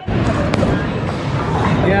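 Bowling alley din: a bowling ball rolling down the lane with a steady low rumble under background chatter, and one sharp click about half a second in.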